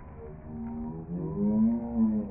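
Song playing, a singing voice drawing out one long note that rises and is then held, loudest near the end.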